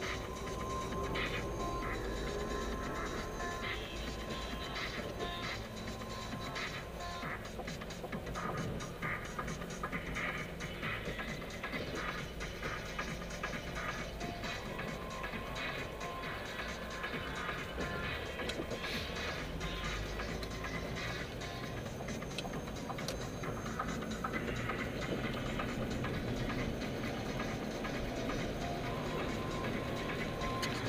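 Music playing on the car stereo inside a moving car's cabin, over steady low road noise.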